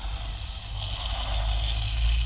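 Hand-pumped garden sprayer wand spraying pest-control solution into a concrete crack, flooding it against termites: a steady hiss that grows stronger about a second in, over a low rumble.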